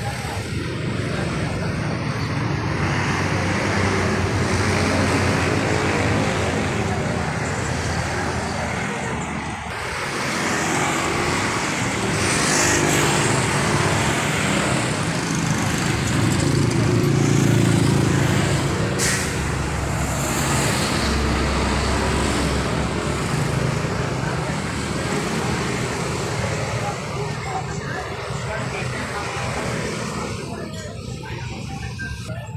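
Road traffic noise of cars passing close by, a continuous rush that swells and fades, with a heavier low rumble a little past the middle, and people's voices mixed in.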